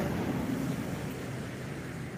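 Steady low outdoor background rumble, with a short spoken word at the very start.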